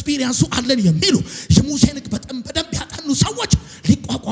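A man preaching loudly and emphatically in Amharic, in quick bursts of speech whose pitch rises and falls sharply.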